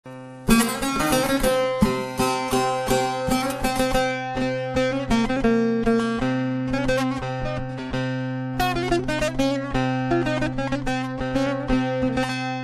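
Bağlama (Turkish long-necked saz) picked with a plectrum, playing a fast instrumental melody of quick repeated notes over a steady low drone from the open strings. It starts about half a second in.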